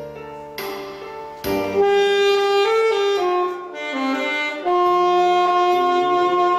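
A saxophone playing a slow melody live. Softer notes open it, the playing grows louder about one and a half seconds in, and it settles onto a long held note near the end.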